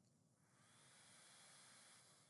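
Near silence, with a faint steady hiss.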